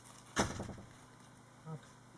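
A single short knock with a brief rustle as a bead-ball brooch is lifted out of its small paper-lined box, followed by a faint murmur of voice.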